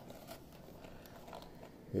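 Faint rustling and scraping of a small cardboard box being turned over in the hands.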